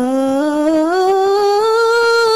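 A woman's solo voice sings a sholawat melody unaccompanied, holding one long note that slowly rises in pitch with a slight waver. No drums are heard.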